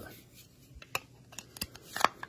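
Handling noise from the metal interior unit of a smart deadbolt being turned over in the hands: light rubbing and a handful of small, sharp clicks and ticks, most of them in the second second.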